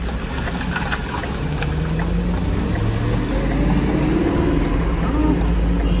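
Vehicle engine running under way, heard from inside the cab, with tyre noise on a wet street. It is a steady low rumble whose pitch rises a little around the middle.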